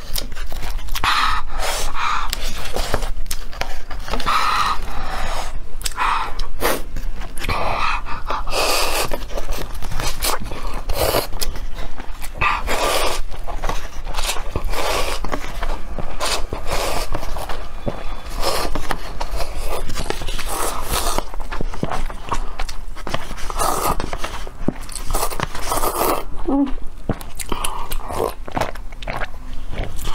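Instant noodles being slurped and chewed close to the microphone: repeated loud slurps, each about half a second to a second long, with wet chewing and short clicks between them.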